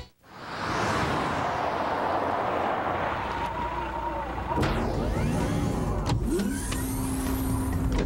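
Car driving along a road, its engine and tyre noise swelling up from silence and then running steadily. A steady whir joins in over the last couple of seconds.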